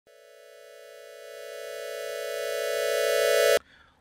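A single sustained electronic synth tone, buzzy and rich in overtones, swelling steadily louder for about three and a half seconds, then cutting off suddenly: an intro riser.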